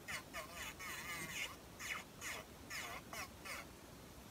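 Electric nail drill (e-file) bit filing the tip of an artificial nail in short strokes, its whine wavering in pitch as it bears on the nail.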